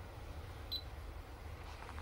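A single short high-pitched electronic beep about three-quarters of a second in, over a steady low hum.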